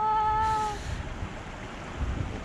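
A woman's drawn-out, high-pitched "aah" lasting under a second, an excited cry as a carp rises near the bread bait. After it there is only a low steady background rumble.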